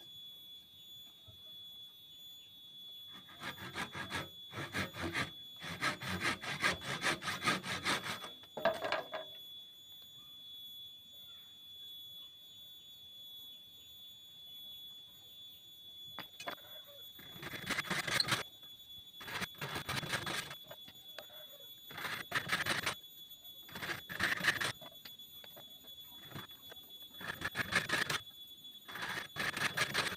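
Hand saw cutting through a wooden strip in bouts of back-and-forth strokes, starting a few seconds in and stopping for a long pause in the middle before resuming. A faint steady high tone runs underneath.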